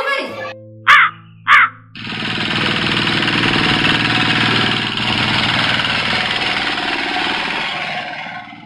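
Background music holding sustained low notes, broken by two loud crow caws about a second in, half a second apart. From about two seconds in, a dense, steady wash of music follows.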